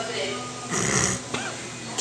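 A man drawing iced lemonade up through a straw in a breathy slurp about halfway through, followed by a short snorting laugh.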